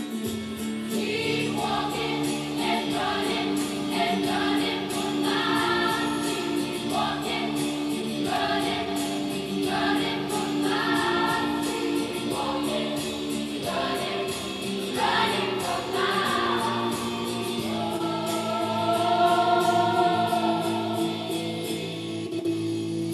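A large choir of young women singing together in harmony, with long held notes over a steady sustained accompaniment, and a held chord swelling louder near the end. It is heard as playback from a laptop's speakers.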